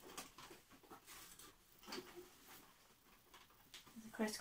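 Faint, intermittent rustling and soft handling knocks as hands smooth and turn a polycotton apron on a dress form.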